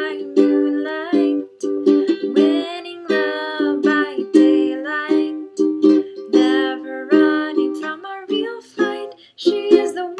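Ukulele strummed in a steady run of chords, with a woman's voice singing along over it.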